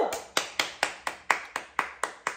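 One person clapping their hands in a steady rhythm, about four claps a second.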